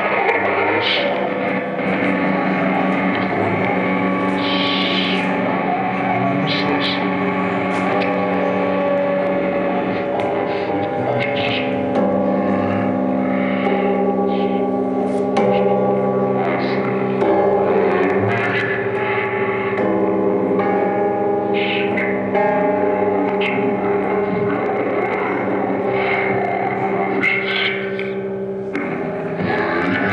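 Live noise-rock improvisation: an electric guitar laid flat on the lap, worked with a mallet and a stick through a distorted amplifier, making a sustained drone of several held tones with scattered sharp hits.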